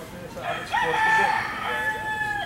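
A rooster crowing: one long call that starts about half a second in, rises briefly and is then held at a steady pitch.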